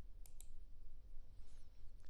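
A quiet pause: faint low hum and room noise, with two small, sharp clicks close together a quarter of a second in.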